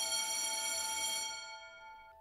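A school bell ringing, a bright, steady ring that starts suddenly and fades out near the end, over soft sustained background music.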